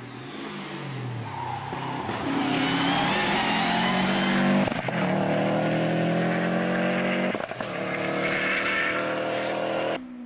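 Rally car engine at full throttle on a flat-out run, its note climbing as it nears, with two brief breaks in the note about halfway through and again a few seconds later. The sound cuts off suddenly at the end.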